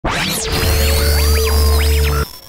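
Electronic intro sting: swooping whooshes and rising and falling synth glides over a deep, steady bass drone that comes in about half a second in.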